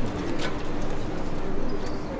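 Steady outdoor city background noise with a bird cooing.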